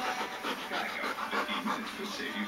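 A dog panting close to the microphone in uneven breaths.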